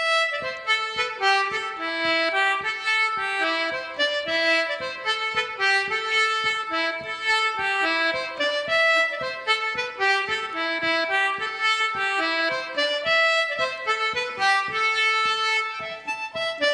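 A traditional Irish dance tune played on a free-reed instrument: a quick, unbroken run of short, clear notes.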